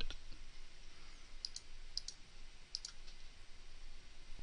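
A few light computer mouse clicks, mostly in pairs, starting about a second and a half in and ending near three seconds, over faint room hiss.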